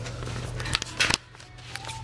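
Clothes being handled on a black plastic hanger: a quick cluster of sharp clicks and rustles about a second in.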